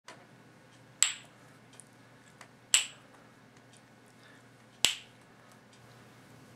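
Wooden kendama (cup-and-ball toy): three sharp clacks about two seconds apart as the ball lands on the wood, each with a brief high ring.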